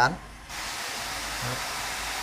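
A steady, even hiss that starts suddenly about half a second in.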